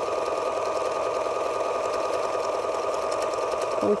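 Electric sewing machine running steadily at an even speed, stitching a decorative entredeux stitch around a circle on a circular embroidery attachment.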